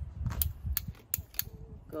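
A few sharp, irregular clicks and taps as the keeper handles the shift box's metal slide latch, with low handling bumps beneath.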